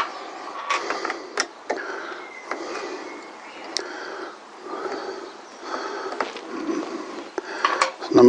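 Phillips screwdriver undoing a small cap screw on a motorcycle's front brake master cylinder reservoir: a handful of sharp, scattered little clicks of the tool tip on the screw, over light scraping and handling noise.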